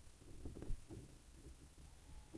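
Faint soft knocks and taps of a palette knife working acrylic paint on a canvas, clustered about half a second in, in an otherwise quiet small room.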